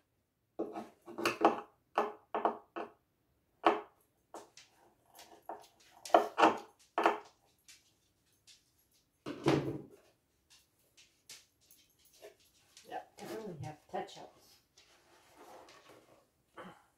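Indistinct talking in short stretches, with a few light wooden knocks as a dresser drawer is handled.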